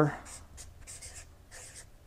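Marker pen writing on a large paper sketch pad: a series of short, faint scratching strokes as letters are written.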